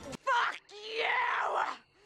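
A person's strained cry from a film soundtrack: a short yell, then a longer groan or scream of about a second whose pitch bends up and down.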